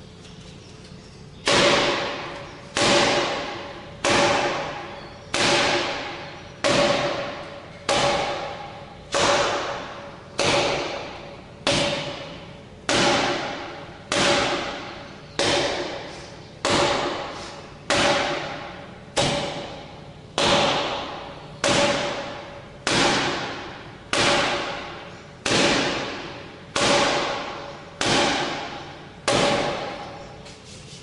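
Forearm strikes on a 'Kamerton Shilova' tuning-fork makiwara, a forearm-conditioning drill. There are about two dozen evenly paced hits, one every second and a quarter. Each hit is a thud followed by a ringing tone that dies away before the next one.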